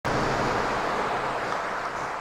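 Steady rushing noise with a faint low hum, easing slightly toward the end.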